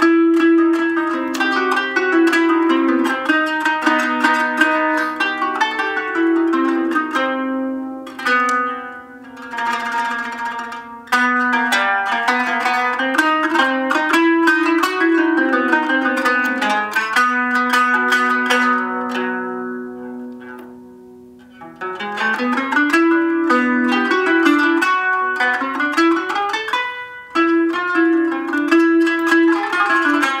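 A kanun, the Ottoman plucked zither, is played solo: a saz semai in makam Karcığar, with quick runs of plucked notes over ringing strings. It eases off and lets the strings ring away twice, about eight seconds in and again around twenty seconds. A rising run about twenty-two seconds in brings the full playing back.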